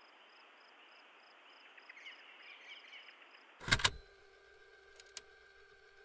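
Quiet outdoor ambience of insects chirping steadily about three times a second, with a few short bird-like chirps about two seconds in. Just past halfway a loud click-clunk cuts the ambience off, leaving a faint steady hum and a couple of small ticks.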